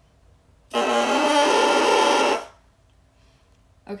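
Bassoon reed blown on its own, a crow, sounding for just under two seconds starting about a second in: crunchy and buzzy, with several pitches at once. This is the kind of crow that indicates a proper embouchure and a reed working decently.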